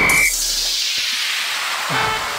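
An electronic interval-timer beep, marking the end of the rest period, stops about a third of a second in. It is followed by an electronic whoosh sweeping down in pitch.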